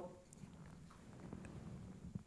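Near silence: quiet room tone with a faint low hum and a few soft clicks.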